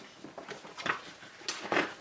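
Paper rustling as the pages of a printed instruction booklet are handled and turned, with a few short crinkles around one second in and again near the end.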